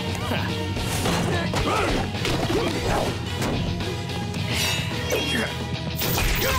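Cartoon fight sound effects, repeated punches, hits and crashes, over steady action background music.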